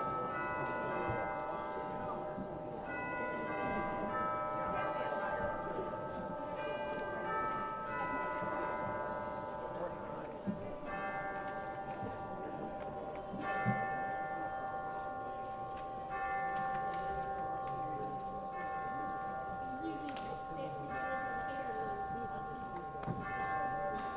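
Slow instrumental church prelude of held, bell-like chords, changing about every second at first and then in longer held chords from about halfway through, over the low murmur of a seated congregation.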